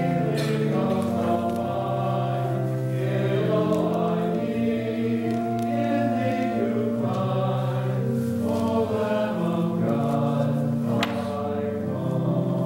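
A hymn sung by voices to church organ accompaniment, in long sustained chords that change every second or two.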